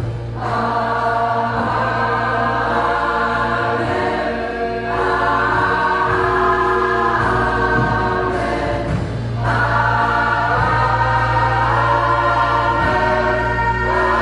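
Large gospel choir singing live in long held chords, new phrases starting about five and about nine seconds in, over steady sustained keyboard and bass notes.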